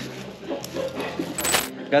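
A single sharp metallic clink with a short high ring about one and a half seconds in, like metal cutlery striking a plate, over faint background voices.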